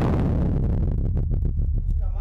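Explosive blast in an underground amethyst mine: the deep rumble of the detonation rolling on through the rock tunnel, with scattered sharp clicks and cracks of debris from about a second in.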